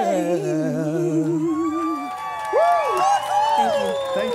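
A man and a woman holding the final note of their duet, with vibrato; the note dies away about halfway through. Then whoops and cheers from the audience.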